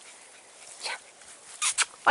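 Staffordshire Bull Terrier puppies giving short, high yips: a faint one about a second in and two sharp ones in quick succession near the end.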